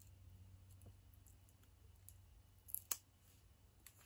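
Near silence with two faint short clicks about three seconds in: foam Stampin' Dimensionals being peeled off their plastic backing sheet.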